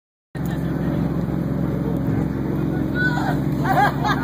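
Tour boat's engine running with a steady low drone. Near the end, high-pitched voices break in over it.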